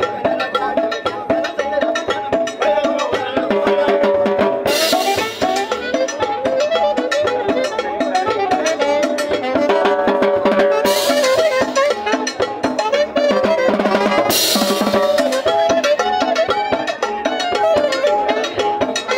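A live band playing upbeat dance music: drum kit and timbales keep a steady beat under a repeating melody, with three cymbal crashes, the first about five seconds in and two more in the second half.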